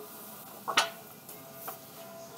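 Faint handling noise of vinyl record sleeves being moved, with a light click just under a second in and a softer one near the end.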